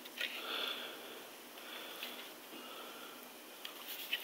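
Faint breathing through the nose: three or four soft breaths, each about half a second long.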